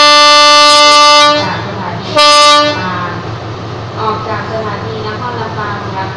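Diesel locomotive horn sounding a long blast that ends about a second and a half in, then a short second blast, over the idling engine: the signal that the express is about to depart.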